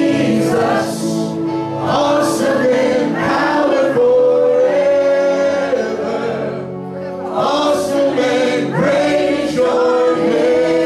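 A congregation and worship band sing a slow praise song together, with long held notes. There is a short lull about seven seconds in.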